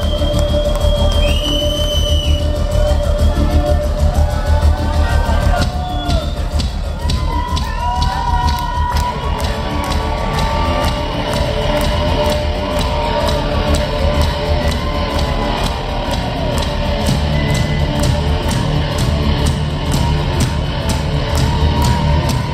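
Live rock band playing loudly through a PA, with heavy bass. The drums settle into a steady beat about halfway through.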